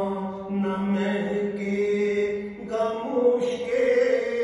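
A man singing a slow, drawn-out Punjabi melody with no instruments, his voice moving between long held notes over a steady low drone.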